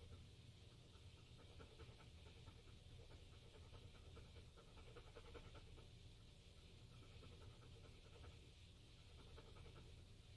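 Faint, quick panting of a dog, in an even rhythm over a low steady hum.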